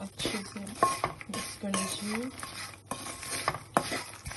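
A spatula stirring and scraping a dry mix of roasted fox nuts (makhana), peanuts and poha around a pan, with irregular scrapes and the clatter of the tossed pieces.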